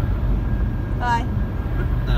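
Steady low road and engine rumble heard inside a car cabin at highway speed, with a brief high-pitched vocal sound about a second in.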